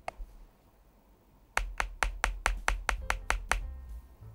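A quick, even run of about ten sharp keyboard key clacks from the Varmilo Minilo75 HE's magnetic linear switches, about five a second, starting about one and a half seconds in.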